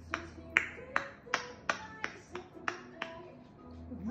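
African grey parrot clicking its tongue: a run of sharp clicks, about two or three a second, that stops shortly before the end.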